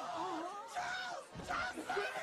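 A woman wailing, her voice wavering up and down in pitch, with a thud about one and a half seconds in.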